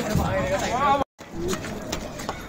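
Excited voices calling out, broken by a moment of silence about halfway through.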